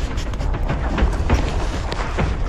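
Wind rumbling on the microphone of a body-worn camera, with scattered knocks and scrapes of a climber's gear and hands against rock.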